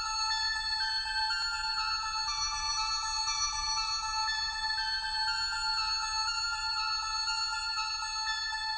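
Instrumental intro of an electro-industrial song: sustained synthesizer tones over one held note, the upper notes shifting step by step, with no clear beat.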